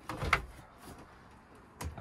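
A caravan entrance door being unlatched and pushed open: a brief clatter of latch clicks and a knock in the first half-second, then quiet, with another sharp click near the end.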